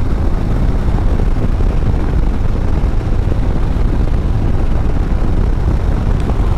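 Harley-Davidson Street Bob's Milwaukee-Eight 114 V-twin engine running steadily at highway cruising speed, its deep rumble mixed with a rush of wind and road noise.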